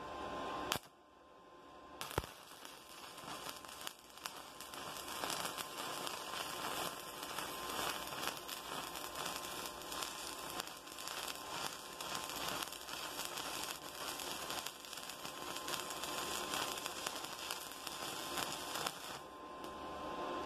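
Stick (shielded metal arc) welding: after a couple of sharp clicks as the arc is struck, the electrode's arc crackles steadily on thin-gauge steel tube, running a vertical-down bead, and stops about a second before the end.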